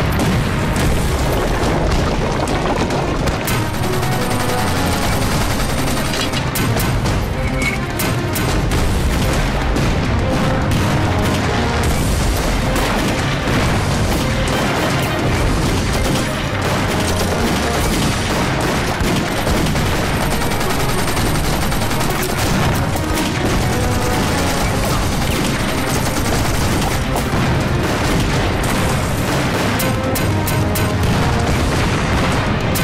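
Repeated shell explosions and crackling gunfire in a battle scene, layered over a music score without pause.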